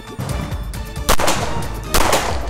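Two pistol shots from a police officer's duty handgun, about a second apart, each followed by a short echo off the range walls.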